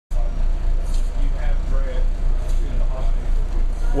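A steady low rumble under faint chatter from people talking in the background. A man's voice starts up right at the end.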